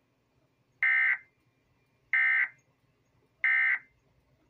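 Three short bursts of Emergency Alert System (SAME) digital data tones, each about a third of a second long and roughly 1.3 seconds apart. This is the end-of-message code that closes the warning broadcast.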